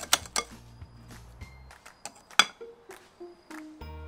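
Metal whisk clinking against a glass mixing bowl: a few quick strokes at the start, then scattered clinks and one sharp clink about two and a half seconds in, over light background music.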